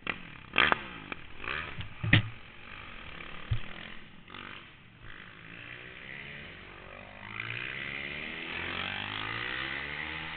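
Kawasaki 450 single-cylinder motorcycle engine revving up and down, heard through a helmet-cam microphone. Sharp knocks come about half a second, two seconds and three and a half seconds in, and the engine runs steadier and louder over the last couple of seconds.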